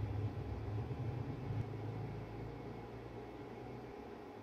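Steady low background hum with a faint hiss, slowly fading and dropping away near the end.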